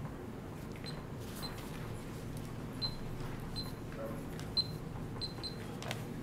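Quiet room tone of a large meeting hall with a steady low hum. It is broken by scattered faint clicks and about seven short, high-pitched blips spread across the few seconds.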